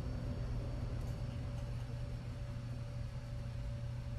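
A low, steady background hum with a faint, constant higher tone over a light hiss. Nothing starts or stops.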